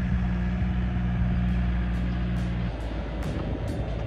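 Skid-steer loader's diesel engine running at a steady idle; the hum changes and drops lower about three seconds in. Background music with light ticking comes in over the second half.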